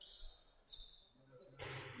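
Basketball game sounds on a wooden gym court: the ball bouncing and shoes squeaking, with a short sharp high squeak about two-thirds of a second in.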